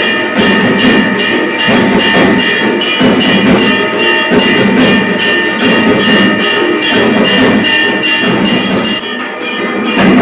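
Temple bells clanged rapidly for the arati, about four strikes a second, their metallic ringing held steady between the strikes.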